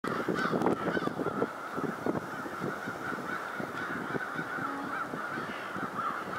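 A distant, unbroken chorus of many birds calling at once, wavering steadily, over irregular crackles that are thickest in the first two seconds.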